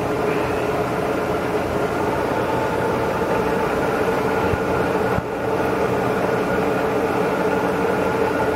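Sharp VH3 milling machine running under power, its vertical power feed travelling upward: a steady mechanical hum with several steady whining tones. The level dips briefly about five seconds in.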